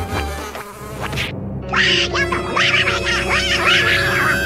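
Insect-like buzzing over background music. About a second and a half in, the high end briefly drops out, and then a run of quick up-and-down whistling glides begins.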